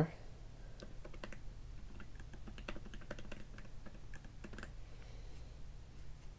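Typing on an iPad's keyboard: a run of quiet, irregularly spaced keystroke clicks as text is entered.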